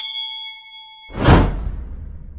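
Subscribe-button animation sound effects: a bright bell ding rings for about a second and fades, then a loud whoosh with a deep rumble comes in and trails off.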